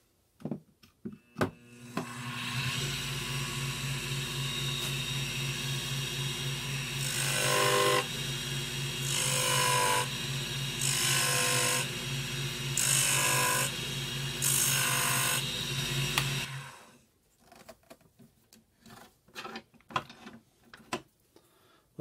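A WEN 3420T benchtop mini wood lathe starts up and runs with a steady motor hum. Midway, a lathe chisel cuts tread grooves into the spinning wooden toy wheel in about five short, rasping cuts a second or two apart. The lathe then switches off and runs down, and a few light clicks and knocks follow.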